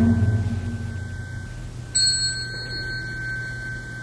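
Temple ritual bells: a deep bell struck just before rings down, and about two seconds in a small high-pitched handbell (yinqing, a bowl bell on a wooden handle) is struck once and rings on with a clear, sustained tone.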